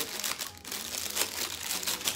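Clear plastic packaging bag crinkling irregularly as it is handled, with small barbell clips inside. There is a brief lull about half a second in.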